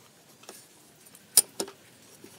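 Metal try square being picked up and set down on pine boards, two sharp metallic clicks close together about a second and a half in, with a faint tick before them.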